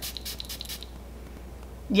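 Fine-mist pump spray bottle spritzing onto skin: a few short, soft hisses within the first second.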